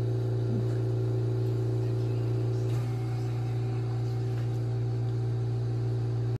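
A steady low hum with a few held tones above it, the upper tones shifting slightly about three seconds in.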